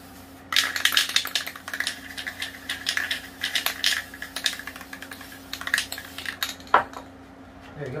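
Aerosol spray-paint can being shaken, its mixing ball rattling rapidly inside for several seconds, then stopping, followed by a single sharper click. A steady low hum sits underneath.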